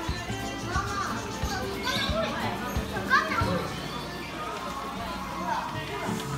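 Background music with children's voices and chatter throughout; no call from the owl stands out.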